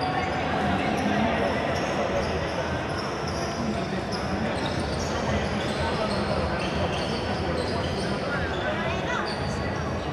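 Indistinct voices and scattered thuds, like a ball bouncing or feet on the court, echoing around an indoor sports hall.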